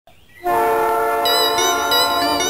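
Train horn sounding a sustained multi-tone chord as a sound effect opening a railway-themed cumbia track. It starts about half a second in, and higher tones join a little past the middle.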